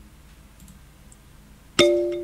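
Quiet room tone, then near the end a bright chime is struck once and starts to ring out.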